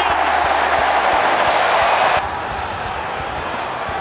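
Stadium crowd cheering loudly for a try. The cheer cuts off abruptly a little past two seconds in and gives way to a quieter crowd murmur.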